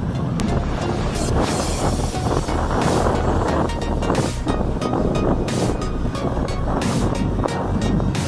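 Motorcycle engine running while riding, with wind buffeting the microphone in repeated gusts.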